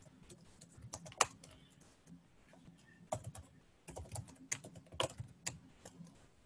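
Typing on a computer keyboard: soft, irregular key clicks in short runs, with a pause of about a second partway through.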